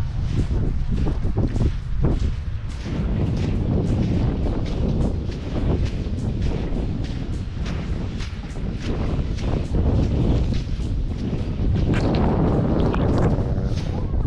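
Wind buffeting the microphone with a heavy, steady low rumble, over a series of short crunching steps in dry sand as the camera-holder walks.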